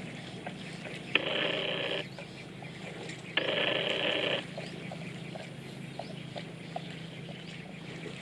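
Two harsh animal calls, each about a second long, one about a second in and one near the middle, each starting and stopping abruptly over a steady low background with faint scattered ticks.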